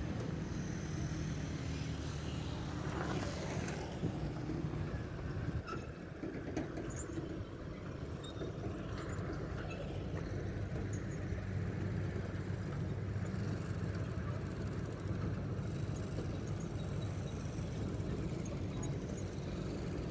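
Road traffic passing: heavy tanker trucks and smaller vehicles such as a motor tricycle, their engines making a steady low drone.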